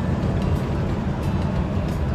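Steady low rumble of a semi-truck's diesel engine and tyres at highway speed, heard from inside the cab.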